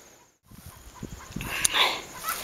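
Chickens clucking in the background, after a split second of dead silence at an edit cut near the start; a louder cluck comes late.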